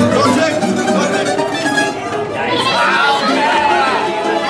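Small acoustic band of guitars and accordion playing a tune, with people talking over the music.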